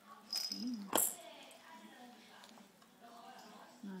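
A baby's short vocal sound while being spoon-fed, with a sharp click about a second in, then soft murmuring sounds.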